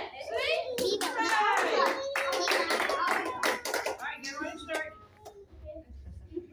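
A small group clapping in quick, uneven claps, with children's voices calling out over them; the clapping thins out and stops about four and a half seconds in.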